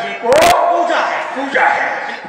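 A man's voice declaiming stage dialogue over a public-address system, with drawn-out, bending vowels. A brief loud crackle comes about half a second in.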